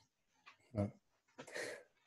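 A man's short, soft laugh: a brief voiced sound about a second in, then a longer breathy exhale.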